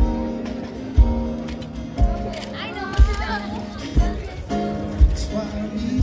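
Live jazz-pop band music played over the pavilion's outdoor loudspeakers: a bass drum hits steadily about once a second under held chords. A voice rises briefly over the music about halfway through.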